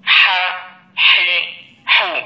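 A recorded voice from a Readboy talking pen's small speaker pronouncing Arabic letter syllables, the letter khā' with its vowel marks. There are three short syllables about a second apart, each triggered by a touch of the pen on the printed letters.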